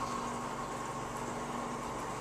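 Aquarium filter running with a steady hum and hiss and a faint steady whine.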